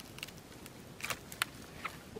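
Dry twigs and dead leaves crackling and snapping as they are handled on the ground: a handful of short, sharp crackles, the loudest about a second and a half in.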